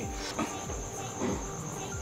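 A faint, steady high-pitched whine or trill over low background noise.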